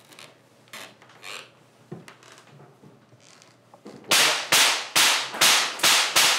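A few faint knocks, then about four seconds in a pistol fired rapidly, five sharp shots about two a second.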